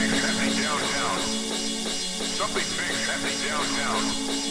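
Breakdown of a 1993 Dutch hardcore techno track with no kick drum: a held low synth tone under repeating swooping synth sounds.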